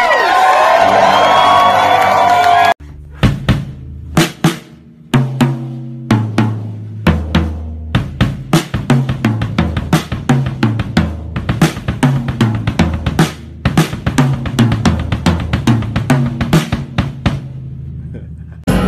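A live rock band with a note sliding down in pitch, cut off abruptly about three seconds in. Then a drum kit is played close up: a few separate strikes, then a busy, fast pattern on toms, snare and bass drum.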